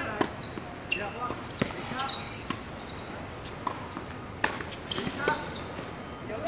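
Tennis ball being struck by rackets and bouncing on a hard court during a rally: a series of sharp pops, about one every half second to a second.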